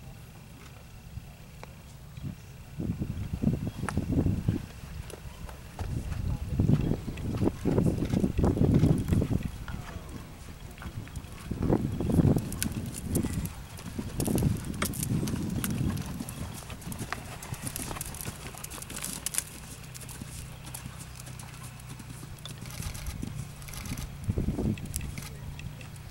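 Horse's hooves trotting on soft sand arena footing, in uneven rhythmic bursts that grow louder as the horse passes close, loudest near the middle.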